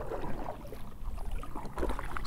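Open-water ambience around a kayak: a low, uneven wind rumble on the microphone with faint water noise.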